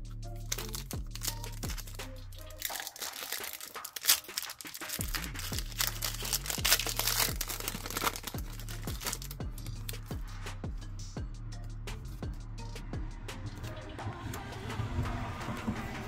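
A foil trading-card booster pack crinkling and tearing open in the hands, with dense crackling that is busiest in the middle. Background music with a steady low beat runs under it.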